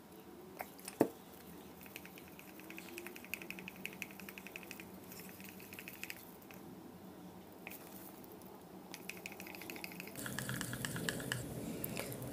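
Paint mix being stirred in a small plastic cup with a thin stir stick: faint, quick runs of soft ticking and scraping as the stick works through the thick paint and against the cup wall, with one sharper click about a second in.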